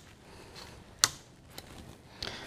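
Handling clicks: one sharp click about a second in and a fainter one soon after, as the scooter's seat yoke, now carrying the battery tray, is pressed down into the TravelScoot frame.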